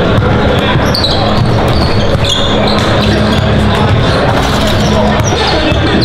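Several basketballs bouncing on a hardwood gym floor during warm-ups, with voices and chatter echoing around a large gym.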